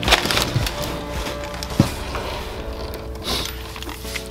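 Crumpled kraft-paper packing rustling and crackling as it is pulled out of a cardboard box, over background music, with a single sharp knock about two seconds in.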